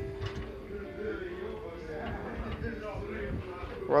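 Electric gear motor of a cheese-making kettle's stirrer running with a steady hum, just switched on and turning the paddle in one direction.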